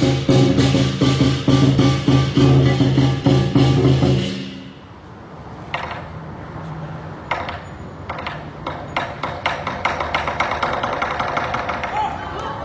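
Lion dance percussion band of drum and cymbals playing a loud, fast, steady beat. It breaks off about four seconds in, then resumes more quietly with rapid light strikes that build up toward the end.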